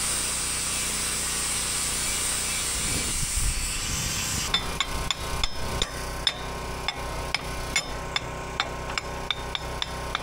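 A handheld angle grinder grinds steel with a steady high hiss, and it stops about four and a half seconds in. Then a hammer taps the steel parts of a weld-on quick-attach plate, giving sharp metal knocks, about two or three a second, as the pieces are knocked into place.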